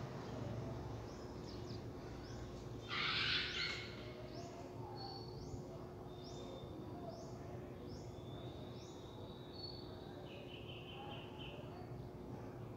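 Faint background bird calls: short high chirps repeating about twice a second, with a brief trill near the end, over a steady low hum. A short noisy rush about three seconds in is the loudest sound.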